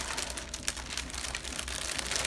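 Clear plastic bag crinkling as hands pull it open and handle it, a run of irregular crackles.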